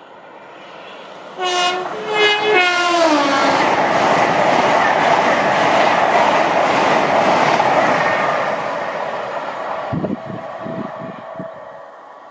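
LNER Class 800/801 'Azuma' high-speed train sounding its horn in three short blasts as it approaches, the last note falling in pitch. Then comes the loud, steady rush of the train passing close by, which fades near the end with a few low thumps.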